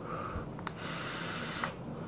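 A vaper's breath through a cloud of vapor: a soft hiss of air, swelling about a second in and lasting under a second.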